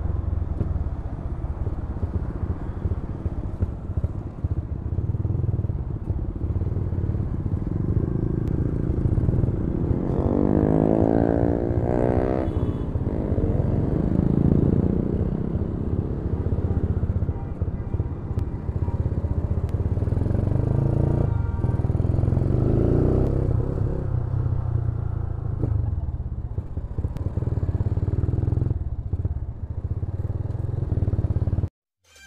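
Yamaha Scorpio's 225 cc single-cylinder four-stroke engine running on the move, under a steady low rumble. The engine note rises as it is revved about ten seconds in, and again around fourteen and twenty-two seconds.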